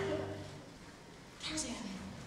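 The held final chord of a stage-musical backing track dies away in the first half second. About one and a half seconds in comes a brief human voice sound.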